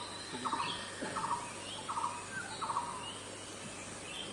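Bird calling: a short note repeated four times, about every 0.7 s, with fainter higher chirps between.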